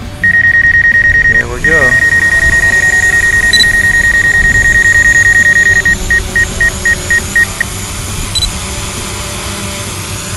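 Loud, high-pitched electronic beeping from the DJI Mavic Pro's flight controls as the drone takes off. The tone holds almost unbroken, then splits into about six short beeps past the middle and stops, over a low steady hum of the drone's propellers.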